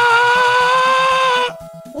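A long, steady held note in a synthetic voice, drawn out on a single vowel, over faint background music with a quick low beat. The held note stops about a second and a half in, and a new synthetic voice starts right at the end.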